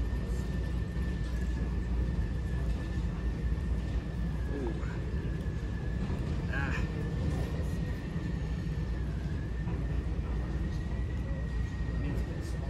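Airport terminal ambience: a steady low rumble with a faint continuous high tone and indistinct distant voices.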